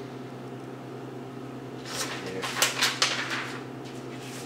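A sheet of drawing paper is handled and lifted off the table: a short cluster of rustling, crackling paper strokes from about halfway in, over a steady low room hum.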